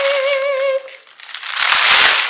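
A woman's held, high "ooh" that wavers in pitch and stops about a second in, followed by the crinkling of a plastic garment bag being lifted out of a cardboard box.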